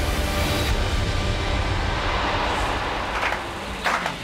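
Trailer sound design: a dense low rumble with a noise swell that builds and fades in the middle, over faint music.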